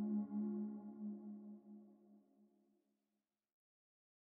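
Ambient background music: one held low note with ringing overtones, dying away and gone about two seconds in.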